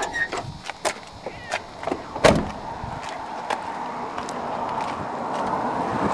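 Clicks and knocks from pulling the hood release and handling the 2000 Jeep Cherokee, with one sharp metal clunk about two seconds in. A rushing noise follows and slowly grows louder.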